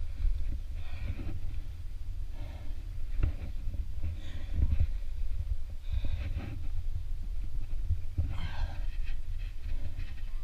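A rock climber breathing hard through a strenuous climb, with a sharp breath every second or two close to a helmet-mounted camera's microphone, over a steady low rumble.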